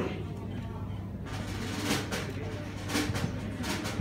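Lull on a live stage between songs: faint voices and a scattering of sharp clacks from about a second in, over a steady low amplifier hum.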